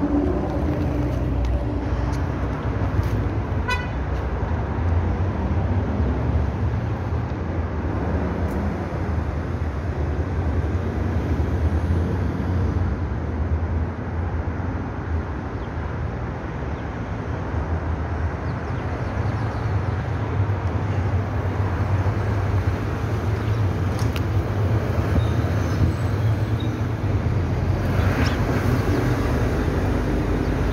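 Steady road traffic noise with a low engine rumble.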